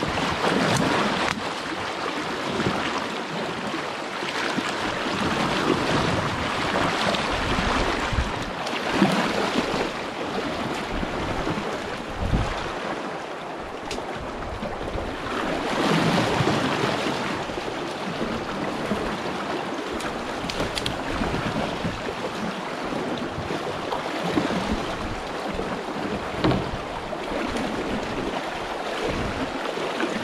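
Rushing river rapids and water churning around a man wading waist-deep as he drags a loaded canoe upstream, with a few brief knocks along the way.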